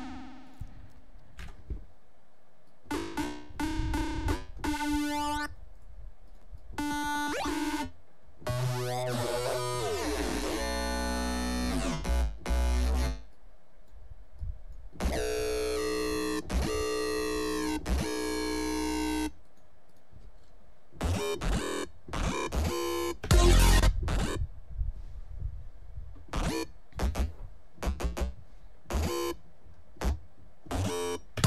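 Synthesizer music played back in short passages that start and stop abruptly: choppy stabs, then a stretch of sweeping pitch glides about ten seconds in, a held chord over deep bass, and short loud stabs with heavy bass in the last third. The patches come from the Serum software synth.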